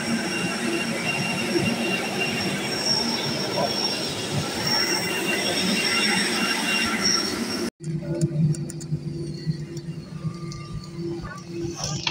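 Airbus A320 on the apron: a steady jet-turbine whine with high tones over a broad rush of air. After a sudden break about two-thirds of the way in, the lower, steadier hum of the airliner's cabin takes over.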